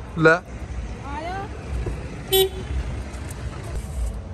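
A vehicle horn gives one short beep about halfway through, over a steady low rumble. A voice speaks briefly at the start.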